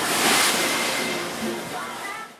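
Rough sea rushing and splashing along the hull of a moving boat, with a louder surge of spray in the first half-second.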